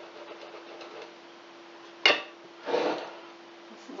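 A kitchen knife cutting into a cheesecake on a glass plate: one sharp click of the blade against the glass about two seconds in, followed by a short scrape. A low steady hum runs underneath.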